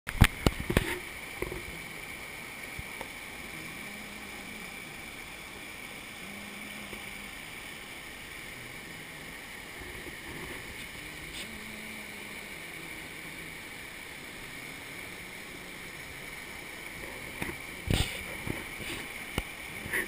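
Mountain torrent rushing over boulders, a steady, even wash of water noise. A few sharp bumps sound at the very start and again near the end.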